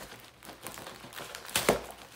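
Poured-glue diamond painting canvas being rolled back by hand: soft rustling and crinkling, with one sharp tap about three-quarters of the way through.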